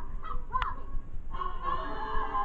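Cartoon sound effects: honking, squawking calls with quick sliding pitches, one sharp rising-and-falling squeal just over half a second in. About a second and a half in, a fuller layer of music and cartoon voices comes in.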